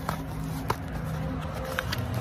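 Soft handling noise of a cardboard sleeve and MRE pouches: a few light clicks and rustles, the sharpest about a third of the way in, over a steady low hum.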